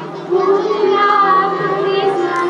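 Children singing a song in unison over instrumental accompaniment, their voices coming in strongly about a third of a second in.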